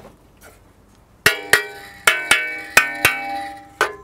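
A flat piece of scrap car metal, held up free, is struck about seven times at an uneven pace, starting about a second in. Each strike rings on with a clear pitched tone: junk metal being tried out as a percussion instrument.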